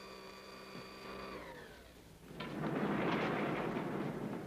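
Elevator's steady electric whine falls in pitch and dies away as the car comes to a stop. About halfway through, a louder rushing hiss follows as the elevator doors slide open.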